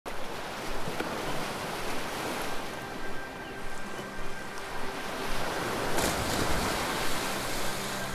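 Ocean surf breaking and washing over rocks, with a louder surge of crashing water about six seconds in. Soft, faint music sits underneath.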